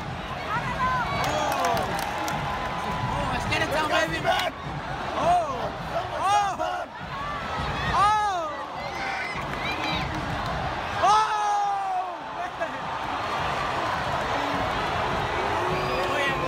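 Soccer stadium crowd during live play: a steady hubbub of many voices, with individual fans shouting and calling out every second or two. The loudest shouts come about halfway through and again about two-thirds through.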